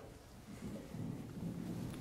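Faint low rumbling and soft bumps from a handheld microphone being handled as it is passed from one speaker to another.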